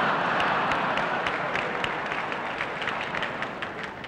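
A large theatre audience applauding, loudest at the start and slowly dying away.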